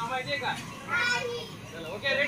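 Children's voices calling out several short, high-pitched words one after another.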